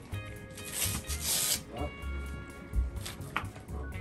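Background music with a steady beat, over a brief scraping rub about half a second to a second and a half in as a foot is worked into a stiff rental ski boot, and a sharp click near the end.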